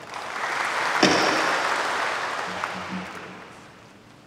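Applause from members in a large assembly hall, swelling over the first second and then dying away gradually. There is one sharp knock about a second in.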